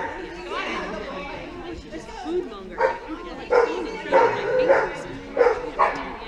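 A dog barking repeatedly, about six sharp barks in quick succession in the second half, over a murmur of people's voices.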